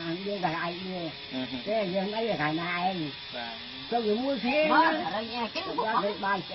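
Speech: a person's voice talking almost continuously, with a faint steady high hiss underneath.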